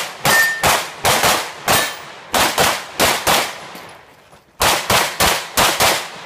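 Open-division 9mm major race pistol firing rapid strings of shots, mostly in quick pairs about a quarter to a third of a second apart. There are about fifteen shots in all, with a break of about a second before the last string.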